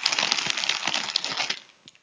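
Crinkly snack bag of Sonko Pop Cool popcorn chips rustling and crackling as a hand rummages inside and pulls out a chip; the crackling stops shortly before the end.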